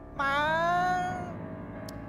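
A man's long, drawn-out whining call of "Má!" ("Mom!"), rising a little in pitch and held for about a second, over soft background music.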